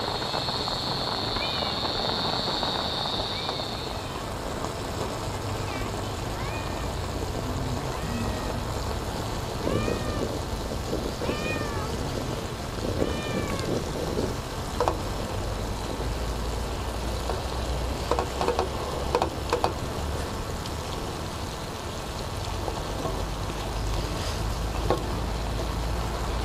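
Short arching animal calls, repeated every second or two through the first half, over steady outdoor background noise, with a thin high whine in the first few seconds.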